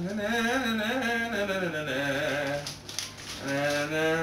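A voice singing a slow tune with long, wavering notes, in two phrases with a short break a little under three seconds in.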